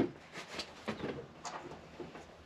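Faint, light clicks and taps of small metal parts and a water pump being handled and set down on a wooden workbench, a few separate knocks.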